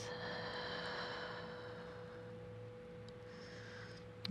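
A bell-like ringing tone holds steady and slowly fades. Its higher overtones die away over the first few seconds, and a soft breathy exhale sits under it in the first second or two.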